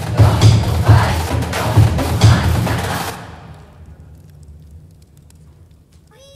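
Live band music: a loud, regular beat of drum hits over deep bass, which stops abruptly about three seconds in and leaves a faint, fading tail.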